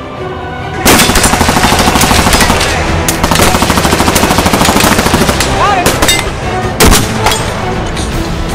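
Shots from a Barrett M82A1 semi-automatic .50 BMG rifle over loud music with a fast, even pulse. The sharpest, loudest shot comes about seven seconds in.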